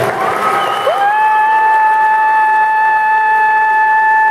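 Gymnasium horn sounding one long steady blast that slides up in pitch as it starts about a second in, over a crowd applauding.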